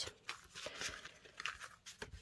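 Strips of scrapbooking paper being handled and shuffled by hand: a few soft, short rustles and scrapes of paper.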